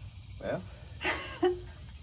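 Speech only: a few short spoken words over a steady low background rumble.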